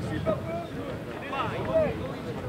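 Voices calling out in short raised shouts, with the loudest call near the end.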